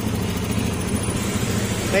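Honda Beat FI scooter's small single-cylinder fuel-injected engine idling steadily. The mechanic suspects a faulty throttle position sensor (TPS) behind its surging and missing Eco-mode light.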